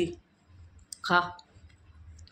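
A short spoken word about a second in, over a low steady hum, with a few faint clicks around it.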